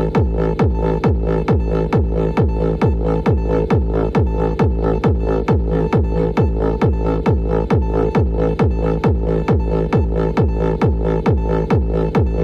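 A drum and bass loop run through Digidesign Bruno's time-slicing cross-synthesis: a fast, even beat of drum hits that drop in pitch, under a held chord of synthesized tones.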